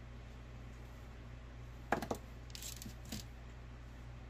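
A few small metallic clicks and ticks from orthodontic pliers and stainless-steel wire being handled as the wire is bent. The sharpest click comes about two seconds in and a smaller one about a second later, over a steady low hum.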